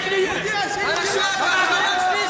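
Several people talking at once in a large, echoing sports hall: spectators' chatter.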